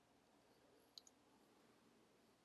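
Near silence with a single faint computer keyboard key click about a second in.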